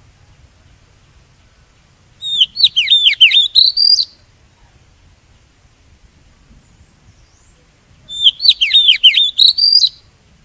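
Oriental magpie-robin singing: two phrases of about two seconds each, one a couple of seconds in and one near the end. Each phrase is a quick run of swooping whistled notes.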